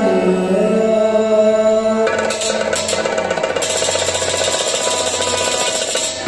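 Kashmiri folk song played live: a man's voice singing a gliding melody over a harmonium's held chord, joined about two seconds in by fast, dense strokes on a tumbaknari goblet drum.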